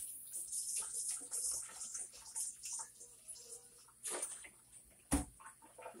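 Kitchenware being handled while a metal strainer is fetched from the dish rack: light scattered clinks and rustles, with a sharp knock about five seconds in.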